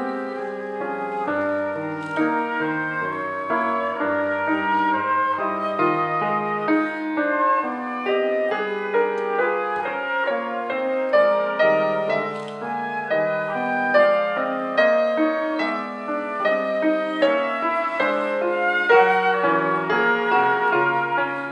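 Concert flute playing a classical solo, a continuous run of quickly changing notes, with piano accompaniment underneath.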